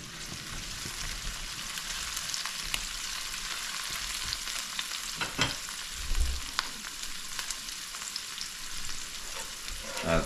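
Chopped onions frying in oil in an enameled cast-iron pot, a steady sizzle. A few sharp clicks and a soft knock come about midway.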